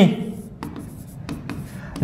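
Marker pen writing on a board: faint scratching strokes with a few light clicks.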